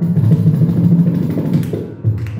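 Carnatic percussion ensemble playing a dense, continuous run of drum strokes, with a kanjira frame drum among the instruments; it tails off near the end.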